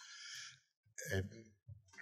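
A man's audible breath, a soft hiss lasting about half a second, followed about a second in by a short hesitant "é".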